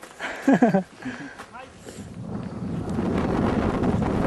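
A brief voice near the start, then wind buffeting the microphone, a steady rumble that grows louder from about two seconds in.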